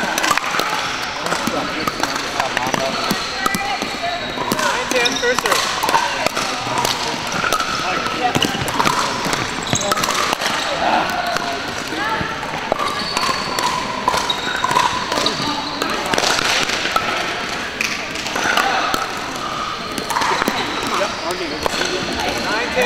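Busy sports-hall background of many indistinct voices, with frequent sharp pops of pickleball paddles striking plastic balls and balls bouncing on the hardwood courts.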